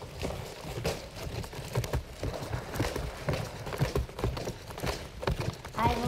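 A person walking in a bulky homemade robot costume: an uneven run of soft footsteps and short knocks.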